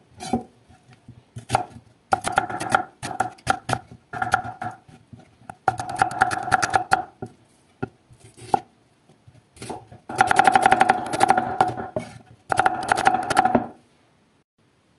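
Chef's knife slicing an onion on a wooden cutting board: quick runs of knife strokes tapping the board, in several bursts with short pauses between them.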